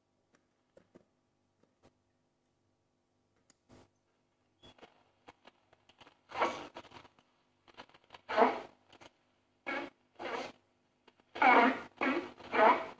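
Short-wave reception from the loudspeaker of a 1948–49 Ducati RR2050 valve radio as its tuning knob is turned. At first there are only a few faint clicks and whistles. From about six seconds in come repeated bursts of a distorted, voice-like signal, which the restorer takes for a number station using single-sideband modulation.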